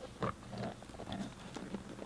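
Cardboard box handled and turned in the hands: a knock about a quarter second in, then a short scrape and a few small ticks.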